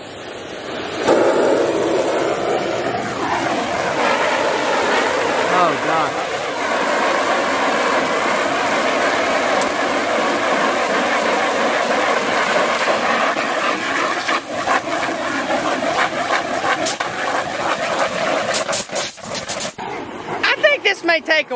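A hard water jet spraying onto the vinyl liner of an above-ground pool, washing off green algae grime, over a steady machine-like hum. The spray breaks into uneven spatters in the last few seconds.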